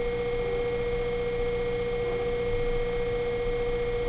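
Electric potter's wheel running steadily while a clay cylinder is thrown: a constant hum with a steady whining tone.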